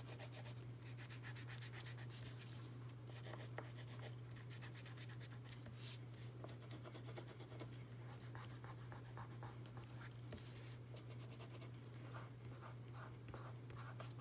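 Crayon rubbing and scratching along the edges of a paper card in many short strokes, smudging dark colour onto the edges, over a steady low hum.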